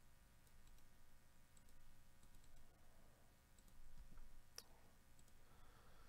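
Near silence with a few faint computer mouse clicks, one sharper click about four and a half seconds in.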